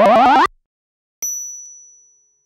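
A loud rising pitched sound that cuts off abruptly half a second in, then after a short silence a single high, clear ding that fades away over about a second: the chime of a channel intro logo.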